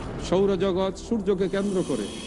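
A man speaking: only speech, with a brief hiss-like sound just at the start.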